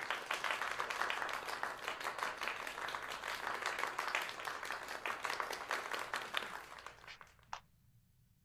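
A round of applause: many hands clapping together, thinning out and fading about three-quarters of the way through, with one last lone clap near the end.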